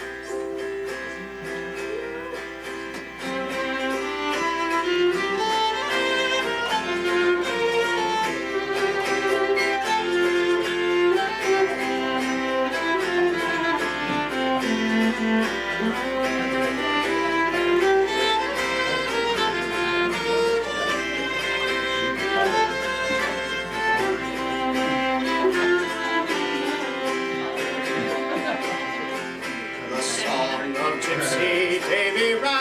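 Fiddle playing a slow melody with an old-time Irish tune feeling, the instrumental opening of a song. It comes in softly and grows louder over the first few seconds.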